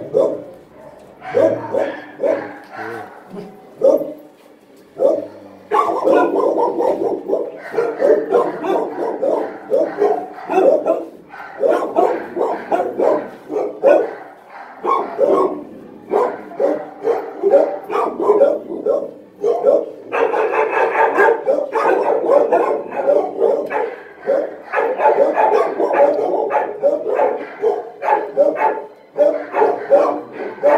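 Dog barking and yipping in quick, repeated runs. The barks are spaced out at first, then come almost without a break from about six seconds in.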